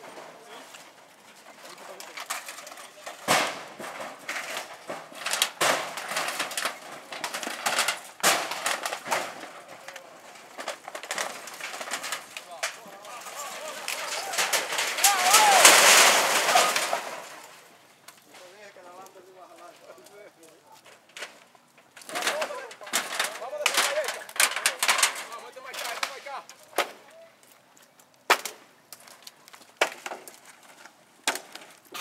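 Dry wooden poles and sticks cracking, snapping and crunching again and again as a shack of sticks and corrugated metal is torn down and trampled, with a longer, louder rush of noise about halfway through.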